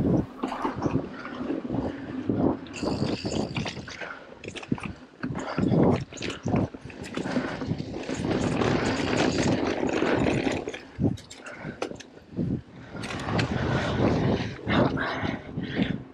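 Mountain bike being ridden over a rough forest trail: the tyres rumble on dirt and wood, and the bike rattles with frequent knocks over bumps, loud and uneven.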